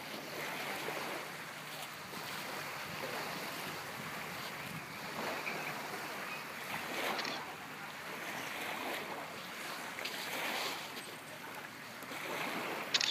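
Outdoor rushing noise that swells and fades every second or two, like wind or lapping water, with no clear engine sound.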